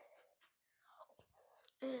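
A child's faint whispering and breathy murmuring, followed near the end by a short spoken "uh".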